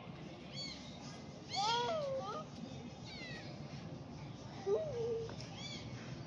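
A small kitten mewing several times in thin, high, rising-and-falling calls, the loudest about a second and a half in.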